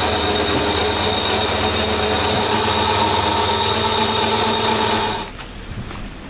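Electric sailboat winch running steadily under load as it winds in a line, with a constant motor whine. It stops abruptly a little over five seconds in.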